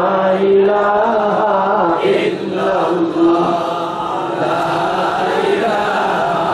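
Male voices chanting a slow devotional melody in long held notes.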